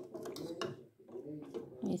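Low talking, with a few light clicks of a metal fork against an aluminium pot as soft pieces of cooked cow's foot are lifted from the broth.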